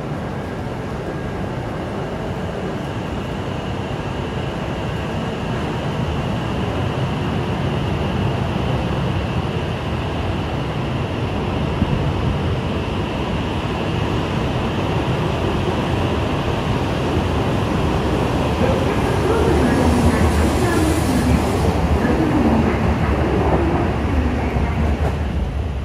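E8 series Shinkansen train pulling away from a standstill and picking up speed, its running noise growing steadily louder as the cars roll past, with rolling wheel noise strongest near the end.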